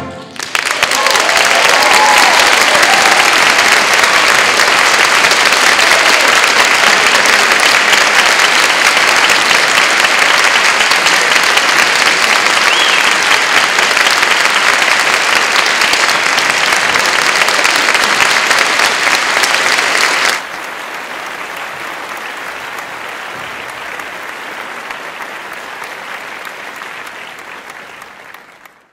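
Audience applauding loudly in a concert hall after a band performance. About twenty seconds in the applause drops suddenly to a lower level, then fades away near the end.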